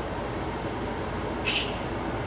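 Instant Pot electric pressure cooker venting steam through its release valve after cooking: a steady hiss of escaping pressure, with one short, sharper spurt about one and a half seconds in.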